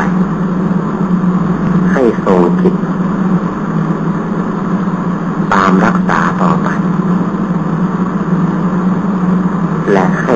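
A man's voice speaking in a few short phrases separated by pauses, over a steady low hum and hiss that runs throughout.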